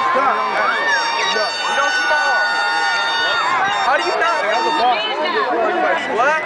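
Crowd of spectators talking and calling out at once, many voices overlapping. A long, steady high-pitched tone sounds through the middle.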